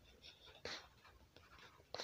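Near silence with a few faint, short noises: a brief hiss about two-thirds of a second in and a click near the end.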